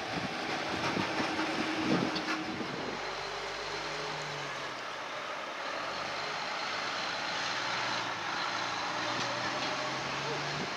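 Fire engine driving past and moving off down the street, its engine and tyres heard together, settling into a steady low engine drone from about three seconds in.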